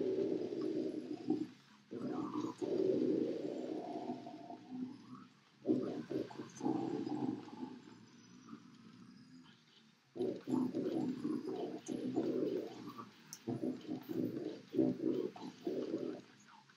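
Deep guttural death-metal growling vocals in long held phrases, broken by short pauses, with a longer near-quiet gap about eight seconds in and quicker, choppier growls toward the end.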